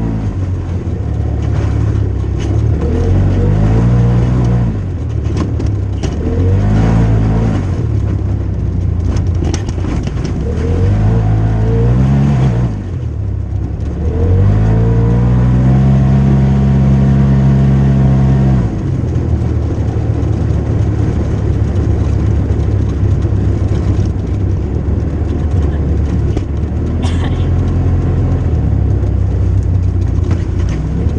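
Side-by-side UTV engine revving up and easing off again and again on a rough dirt trail, then holding a longer pull for about four seconds before settling to steadier running.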